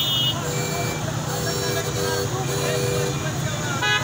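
Busy market-street din: many voices talking at once over motorcycle and small-vehicle engines running. A steady two-note electronic tone sounds on and off through the middle, and a short horn toot comes near the end.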